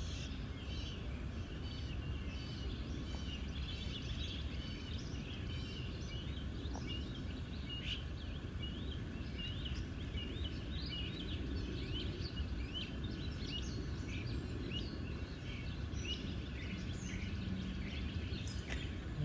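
Small birds chirping: many short, quick calls come one after another over a steady low background rumble.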